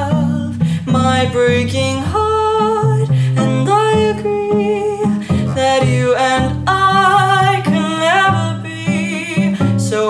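Cello played pizzicato, plucking a low bass line of jazz-standard chords. Above it runs a sustained melody line with vibrato that slides between notes.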